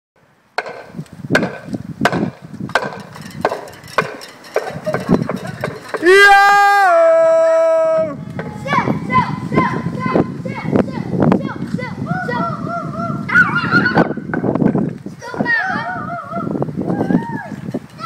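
A run of sharp knocks roughly every 0.7 s, then one loud pitched call held for about two seconds that drops slightly in pitch near its end, then children calling out and cheering in rising and falling voices.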